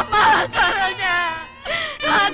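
A person wailing aloud in grief, the cry wavering and breaking in pitch, fading briefly about a second and a half in before rising into another cry near the end.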